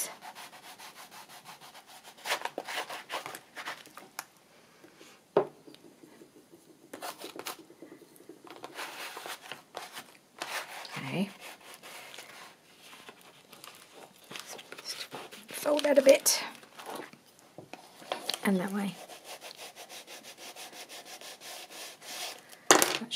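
A bone folder rubbed back and forth over freshly glued paper, pressing it down into the crease of the journal's fold. The scraping strokes come in groups with pauses between, and there is a sharp click about five seconds in.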